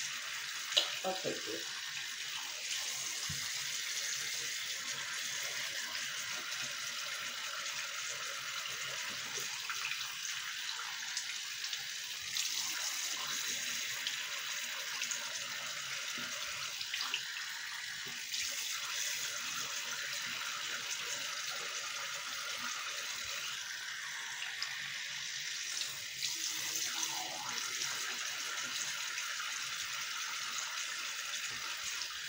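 Bathroom sink tap running steadily while cold water is used to wash a face.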